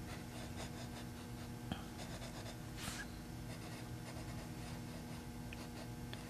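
Pencil scratching on paper in many short, faint strokes as numbers on a drawn clock face are gone over to darken them.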